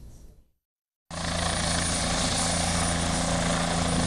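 Helicopter in flight: steady engine and rotor noise with a thin high whine, cutting in abruptly about a second in after a moment of silence.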